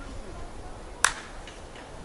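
A single short, sharp click about a second in, over faint low background noise.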